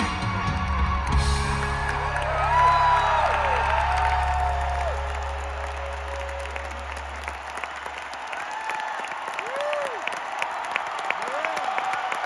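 End of a live rock song: the band's last sustained low note rings on and fades out about two-thirds of the way through. Meanwhile a large arena crowd cheers and claps.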